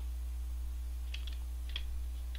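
A steady low electrical hum with a few faint, light clicks a little past the first second.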